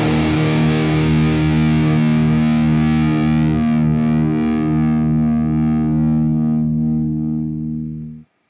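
Final chord of an old-school thrash/death metal song: a heavily distorted electric guitar chord struck once and held, ringing out with no drums. Its upper tones fade, and it dies away near the end before stopping abruptly.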